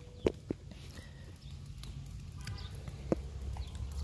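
A few sharp clicks or taps, two close together near the start and one about three seconds in, over a steady low rumble, from handling near a caged pepper plant.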